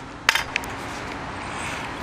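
Steady outdoor background noise with one sharp click about a third of a second in.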